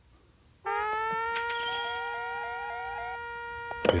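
A synthesized electronic tone starts suddenly about half a second in and holds steady, with a quick rising chirp repeating over it, about three a second, through the middle.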